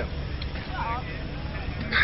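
Faint background voices over a steady low rumble, with a nearby voice starting right at the end.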